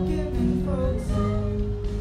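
Live band music: voices singing over acoustic guitar, with long held notes.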